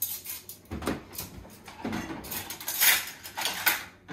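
Dishes and cutlery being handled, with irregular clinks, knocks and scrapes of crockery and metal utensils.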